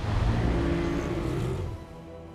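Loud low rushing roar of a huge breaking ocean wave that sets in suddenly and dies away near the end, under held notes of film-score music.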